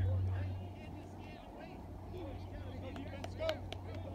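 Faint, distant voices of players and spectators, with a low steady hum that fades out within the first second and a single short click about three and a half seconds in.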